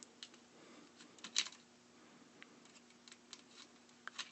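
Faint small clicks and scrapes of a hex driver turning a screw out of a 3D printer's extruder head, with one sharper click about a second and a half in, over a faint steady hum.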